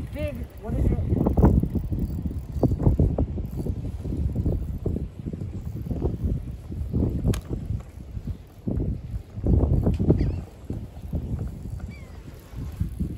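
Strong wind buffeting the microphone in gusts, a low rumbling rush that rises and falls throughout, with one sharp click about seven seconds in.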